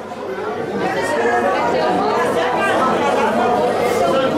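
Several people talking at once in a large hall: overlapping chatter, growing louder about a second in.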